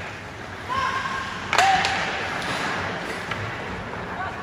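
Ice hockey play in a rink: a sharp crack of stick or puck impact about a second and a half in, with short shouted calls just before and after it.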